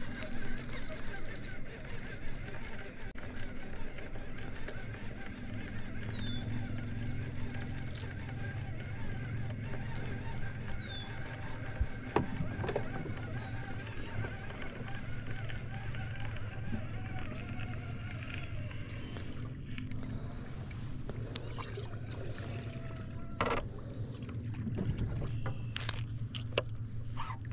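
Steady low hum of a bow-mounted electric trolling motor pushing a small fishing boat, with a few sharp clicks, one loud near the end, and a couple of short high chirps.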